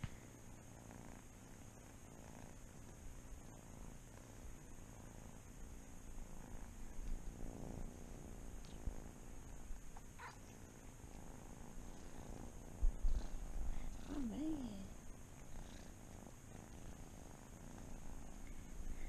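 Kittens purring while being petted, a faint, even low rumble. A brief high mew comes about ten seconds in, and a soft bump a few seconds later.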